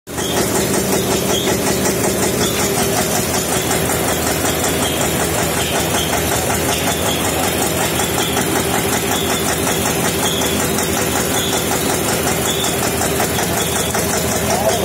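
Mustard oil expeller running, belt-driven by a stationary engine: a loud, steady mechanical drone with a fast, even beat.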